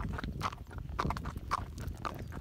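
Hoofbeats of a Tennessee Walking Horse walking on a paved road: a steady clip-clop of about two hoof strikes a second.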